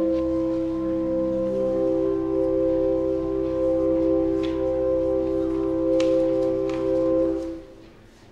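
Pipe organ holding sustained chords over a low bass note, the notes changing only slightly. The music stops about seven and a half seconds in, with a few faint clicks over it.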